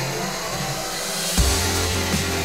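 Background music, then about one and a half seconds in a sudden loud burst as the starting gate drops and a pack of 65cc two-stroke motocross bikes launch off it at full throttle.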